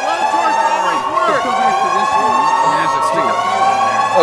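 Indistinct voices over a steady electronic tone, with slowly rising siren-like glides above it.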